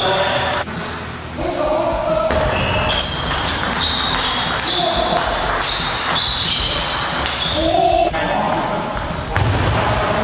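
Table tennis rally: the celluloid ball clicking off rubber-faced paddles and bouncing on the table in quick, irregular knocks, with the gym hall's echo.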